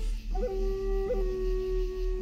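End-blown flute playing long held notes, sliding up into a note early on with a short flick about a second in. Underneath runs a low electronic drone pulsing about three and a half times a second: a 3.5 Hz delta binaural beat.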